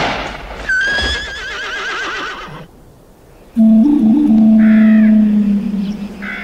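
A horse whinnies about a second in, one shaky, wavering call that fades out. After a brief quieter gap, a loud held low musical note from a Western film soundtrack comes in at about three and a half seconds.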